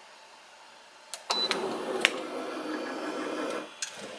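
Automatic heat press's motor lifting the heated top plate after a pre-press. A steady mechanical whir starts about a second in and runs for about two and a half seconds, with clicks as it starts and stops.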